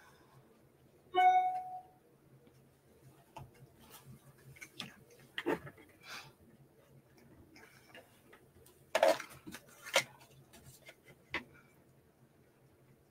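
Scattered light clicks and taps of paper circles being handled and set down on a plastic scoring board, the two loudest near the end. A brief pitched tone sounds about a second in.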